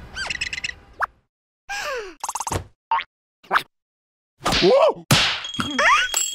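Cartoon sound effects and the characters' wordless squeals and exclamations in several short, separate bursts with brief silences between: quick comic hits, a falling slide, small blips. The loudest comes in the last second and a half.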